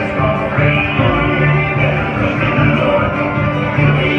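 Live bluegrass band playing, with acoustic guitar over a walking upright bass line.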